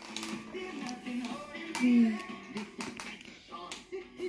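An animated film trailer's soundtrack playing from a television: music with voices and several sharp percussive hits.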